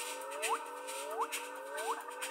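Sparse abstract electronic music: a synthesized tone sweeping sharply upward, repeating about every two-thirds of a second over a slower rising tone and faint clicks, with no bass.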